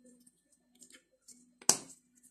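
Quiet handling of kitchen items on a tabletop over a faint low hum, with small ticks and then one sharp click near the end that rings briefly.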